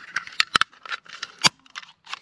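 Plastic surface socket (bubble plug) being fitted together by hand: a few sharp plastic clicks and scrapes as the cover is pressed onto its base, the loudest snaps a little after half a second in and about a second and a half in.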